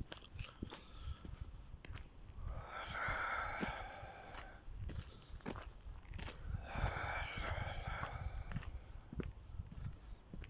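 Footsteps and the rustle and knock of a handheld phone, with two long breathy hisses about three and seven seconds in.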